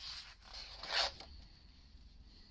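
A page of a spiral-bound book being turned by hand: paper rustling, with a louder swish about a second in as the page flips over.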